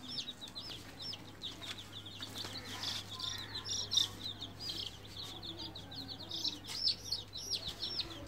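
A group of baby chicks peeping continuously: many short, high cheeps overlapping, several every second.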